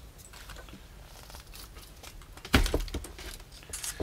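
Handling noise as an Eric Martin two-row melodeon is taken apart: its bellows strap undone and the wooden right-hand end lifted off the bellows frame. Faint rustling and small clicks, then one sharp knock a little past halfway, followed by a couple of light clicks.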